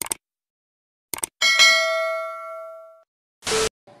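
Subscribe-button animation sound effects: quick clicks, then a bell ding that rings out and fades over about a second and a half, and a short burst of noise near the end.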